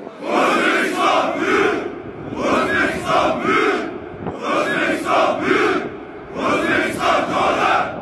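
A large formation of soldiers shouting a phrase in unison, four times over. Each chant lasts about a second and a half, with a short pause before the next.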